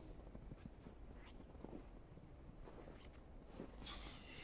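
Faint footsteps in snow, soft irregular steps against near silence.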